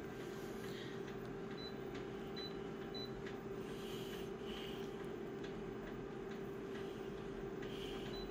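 Multifunction colour copier humming steadily, with three faint short high beeps from its touchscreen as settings are pressed.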